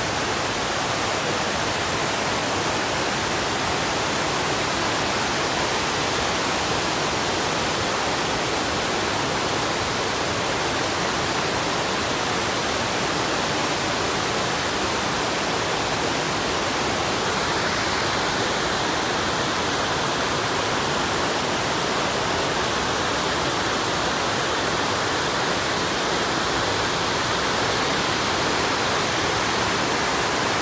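Steady rush of water from Fukiware Falls, a wide, low waterfall, and the rapids pouring over its bedrock riverbed. The sound's character shifts slightly a little past halfway.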